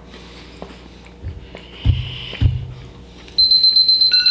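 An iPad countdown timer's alarm starts about three seconds in as the count reaches zero: a loud, steady, high electronic tone. Before it come two short muffled closed-mouth hums from a mouth full of crackers.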